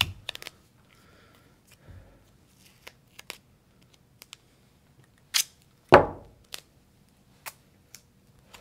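Gorilla duct tape being pulled from the roll and torn, heard as a scattering of short, sharp rips and snaps. Near the end there is a heavier knock as the roll is set down on the wooden bench.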